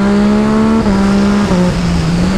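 Yamaha MT-09 three-cylinder engine under hard acceleration, its pitch climbing and then dropping in quick upshifts a little under a second in and again about a second and a half in, with wind rushing over the handlebar camera.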